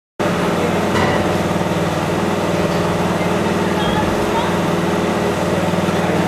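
An engine running steadily at a constant speed, with a fast, even pulse.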